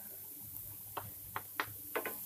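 A few light, separate taps and clicks of kitchenware against a frying pan, about four in the second half, over a faint steady background hiss.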